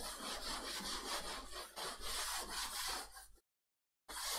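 Blackboard eraser wiping across a chalkboard in uneven strokes, a dry scraping rub that stops about three and a half seconds in.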